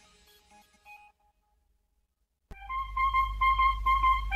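The tail of a countdown music bed fades away, and after about a second and a half of silence a TV news theme starts suddenly about two and a half seconds in: a deep steady bass under a quick repeated figure of short high electronic notes.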